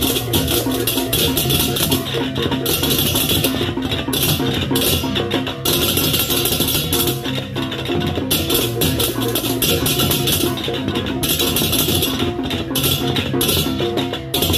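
Balinese baleganjur gamelan playing: rows of ceng-ceng kopyak hand cymbals clash in fast interlocking patterns, swelling into loud stretches of crashing and easing back several times, over kendang barrel drums and steady ringing pitched tones.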